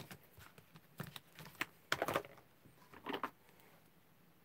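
Clear plastic stamping supplies handled on a desk: a stamp-set case and an acrylic stamp block clicking and tapping. The clicks are irregular, with a cluster of louder clacks about two seconds in and another just after three seconds.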